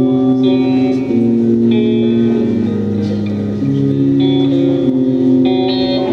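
Electric guitar played through an amplifier in an instrumental passage of a song, sustained chords changing about once a second.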